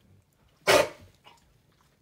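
A large long-haired dog lets out one short, sharp bark about two-thirds of a second in.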